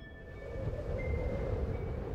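Low rumbling swell that grows louder, with a few faint held tones over it: the opening of a cinematic intro soundtrack.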